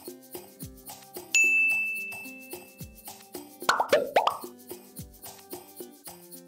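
Edited background music with a steady beat. About a second in, a bright ding sound effect rings and fades out over a second and a half. Near the middle comes a quick run of plop sound effects that fall in pitch.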